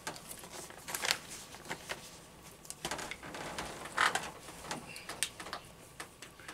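Faint rustling and short scraping sounds of paper, a handful of brief rustles spread through, as the pages of a book are handled and turned to find a passage.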